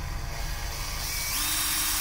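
Makita DHP453 18V cordless hammer driver-drill's brushed motor running free, speeding up about a second in as the variable-speed trigger is squeezed further, its whine stepping up in pitch.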